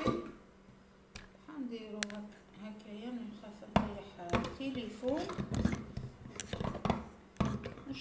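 Glass dishes and a glass lid knocking and clinking on a kitchen counter as they are handled: a few sharp clinks, the loudest about four seconds in, then a busier run of knocks. Low voice sounds run underneath.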